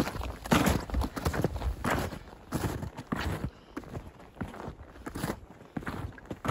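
Footsteps of snowshoes crunching in snow, about two steps a second, fainter in the second half.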